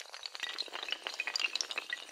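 Sound effect of many small hard, glassy pieces clattering and clinking in a dense, unbroken spill of rapid clinks, like tiles or glass tumbling and shattering.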